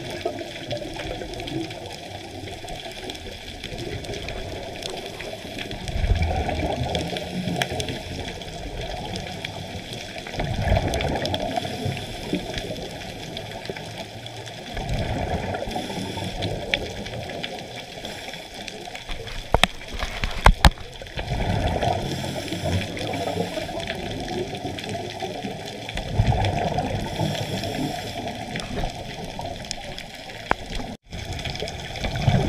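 Scuba diver breathing underwater through a regulator: a gurgling rush of exhaled bubbles about every five seconds, with a steady hiss between. A few sharp clicks come about two-thirds of the way through.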